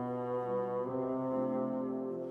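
Bassoon and piano playing a classical chamber piece live. The bassoon holds long notes, moving to new pitches about half a second and about a second in.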